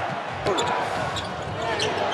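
Basketball bouncing on a hardwood arena court, a few sharp strikes over steady arena crowd noise.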